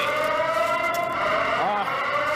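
A steady, siren-like tone with several overtones, slowly rising in pitch, with a man's voice heard briefly near the end.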